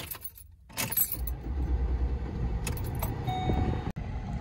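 Keys jangling at the ignition of a Ford Explorer, then the engine starts about a second in and settles into a steady idle.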